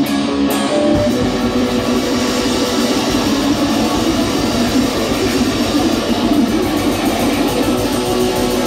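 Electric guitar played loud through an amplifier: a held chord gives way, about a second in, to a dense, churning wash of fast strumming.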